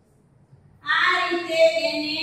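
A girl's voice singing in long held notes, starting about a second in after a near-silent pause.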